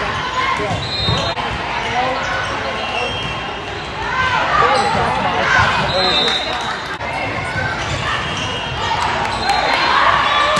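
Volleyball rally on a hardwood gym court: the ball struck by hand several times, sneakers squeaking in short high bursts, and players and spectators calling and shouting in the echoing hall.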